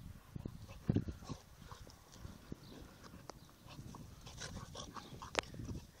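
Two dogs play-fighting on grass: short rough vocal sounds and scuffling, with scattered clicks and one sharp click about five seconds in.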